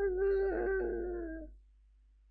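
A man's high, drawn-out wordless hum, held about a second and a half, sagging slightly in pitch before it stops.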